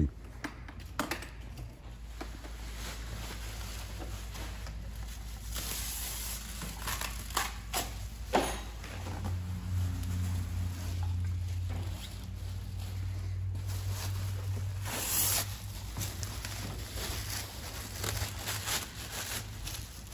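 Plastic sheeting and bubble wrap being pulled off and crumpled by hand: irregular crinkling and rustling with scattered sharp crackles. A low steady hum joins in the middle.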